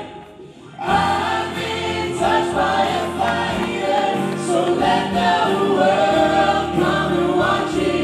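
Gospel vocal group singing in harmony. A held chord breaks off at the start into a pause of under a second, then the voices come back in at full strength and carry on.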